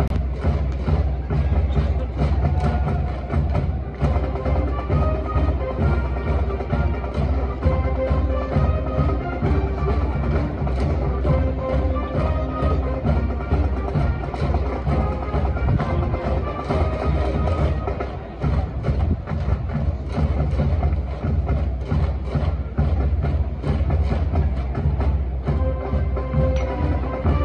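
School brass band with drums playing a baseball cheering song from the stands: a brass melody over a steady, driving drumbeat.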